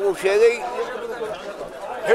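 Speech only: an elderly man talking into the microphones.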